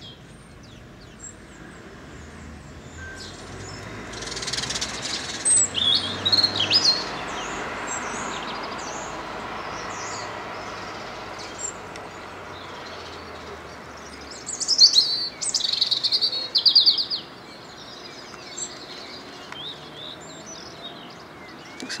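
Garden songbirds chirping and trilling, loudest in two clusters about five seconds and fifteen seconds in. Under them a faint rushing noise swells and then fades over several seconds.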